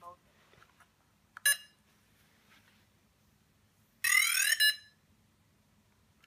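Electronic start-up tones from a Blade 350QX quadcopter being powered on: a short beep about a second and a half in, then a louder, under-a-second burst of rising tones about four seconds in.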